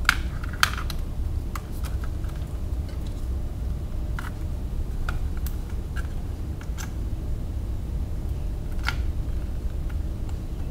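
Scattered light clicks and taps of hands handling wires and small plug connectors, about nine in all, over a steady low hum.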